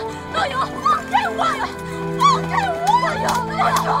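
A woman crying and wailing in distress while others call out her name to stop her, over sustained dramatic background music.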